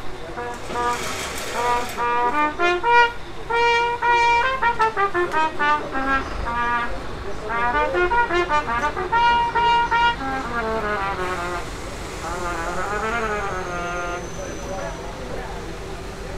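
A Vincent Bach Stradivarius trumpet played in short phrases of separate notes. The player finds its tone oddly dull and muffled ("muy sorda") and is unsure whether it is a counterfeit or just needs cleaning.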